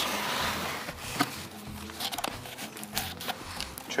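Cardboard and paper being handled: soft rustling, then a few light clicks and knocks as a small cardboard calendar box is opened and a rolled paper slip is taken out.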